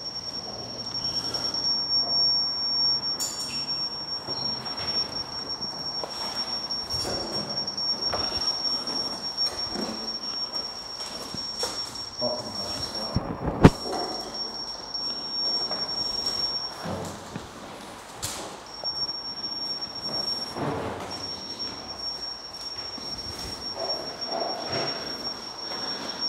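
Scattered knocks and clunks of fitters levelling metal workshop cabinets, with one sharp knock about halfway through, over a steady high-pitched whine.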